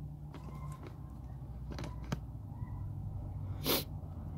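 Quiet steady low hum, with a few faint clicks and one short burst of hiss near the end.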